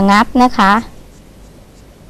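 A woman speaks briefly, then a small carving knife scratches faintly as it cuts into raw papaya flesh.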